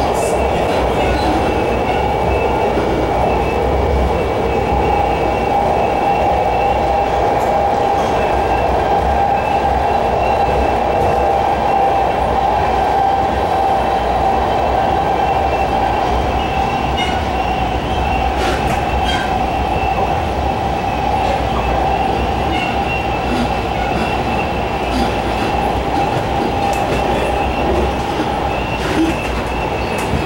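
Ride noise of a MARTA rail car in motion, heard from inside the car: a steady rumble of wheels on rail with a steady whine and a few faint clicks. The whine fades near the end.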